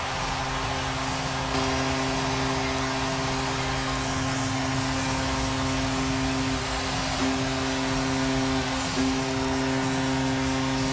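Arena goal horn sounding steady, sustained tones over a dense roar of crowd cheering after a home goal. The horn steps up in level about a second and a half in and shifts again near the end.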